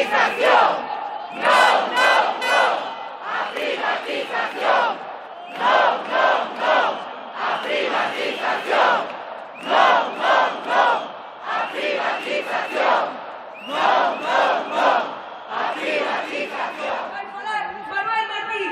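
A large crowd of demonstrators chanting a slogan in unison, the same shouted phrase repeated over and over about every two seconds.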